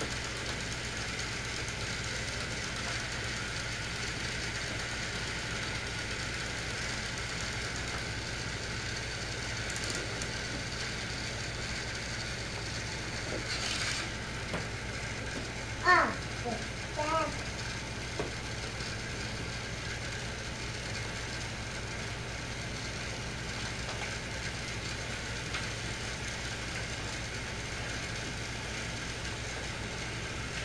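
A battery-powered Thomas Trackmaster toy engine running along plastic track, a steady whir through the whole stretch. A short voice cuts in about halfway through and is the loudest sound.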